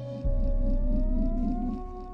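Background music: a sustained synth tone that glides slowly upward in pitch, over a deep bass drone that comes in about a quarter second in.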